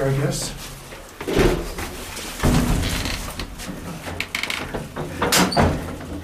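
Old freight elevator's door and gate being worked shut by hand: a heavy thump about a second and a half in and another a second later, then a low rumble and some metallic clicks near the end.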